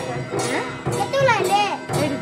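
Street festival music with a steady percussion beat of about two strokes a second. A crowd's voices and a child's high voice call out over it, the calls loudest in the second half.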